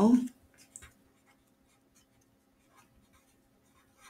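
Marker pen writing on paper: short, faint scratching strokes as a word is written out.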